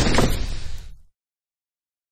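Crash sound effect from an animated logo intro, a sudden hit that dies away about a second in.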